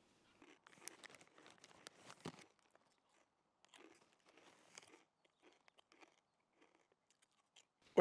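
Faint, irregular crinkling and crackling of a plastic snack packet being handled and opened, in two spells of about two seconds and a second and a half, then a few scattered crackles.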